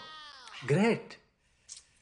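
A voice making short drawn-out calls that rise and then fall in pitch, one about a second in.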